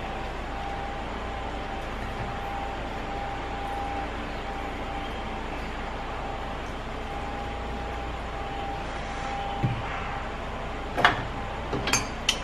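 Steady background hiss and low hum with a faint, thin steady tone running through it. Near the end come a few short light knocks, as lemon halves are set down on a plastic cutting board.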